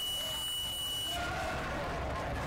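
Match-timer buzzer sounding one steady high-pitched tone at the end of the wrestling period, cutting off about a second in, over the hum of voices in the hall.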